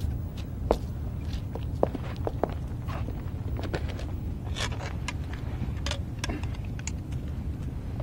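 Footsteps and shoe scuffs on pavement, a run of short, irregular taps over a steady low background rumble.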